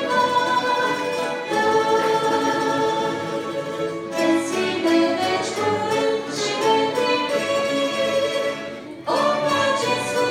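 Small orchestra led by violins playing sustained, slow-moving chords. The music dips briefly about nine seconds in, then comes back in on a new chord.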